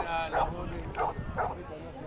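A dog barking, four short sharp barks over about a second and a half, with outdoor voices faintly behind.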